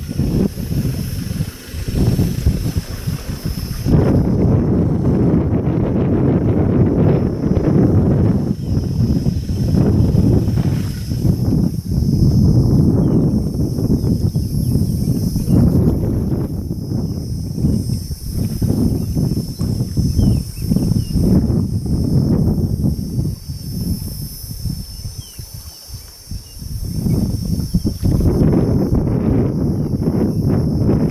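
Wind buffeting the microphone: a loud, gusting low rumble that rises and falls unevenly and eases for a few seconds past the middle.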